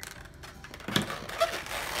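Handling noise of a twisted latex balloon dog rubbing and squeaking under the hands, with a light knock about a second in as a marker is set down on the table.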